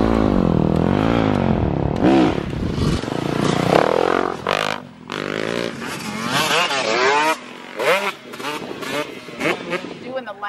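Dirt bike engines revving, the pitch climbing and falling again and again as the bikes accelerate and shift. Loudest in the first few seconds, then fainter as the bikes ride away.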